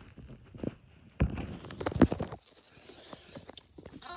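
Soft handling knocks and scuffs, with two louder thumps about one and two seconds in.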